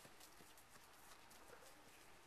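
Faint, irregular footsteps of two people walking through grass, heard over near silence.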